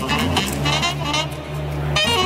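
ROLI Seaboard played live in a jazz style: a saxophone-like lead line with vibrato over a low bass note held for over a second.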